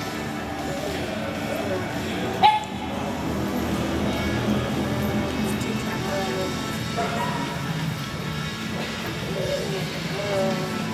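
Background music playing steadily, with a single short sharp knock about two and a half seconds in.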